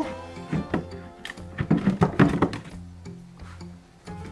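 Background music with plucked notes, over a few light knocks of wooden enclosure panels being pressed together by hand, most of them in the first half.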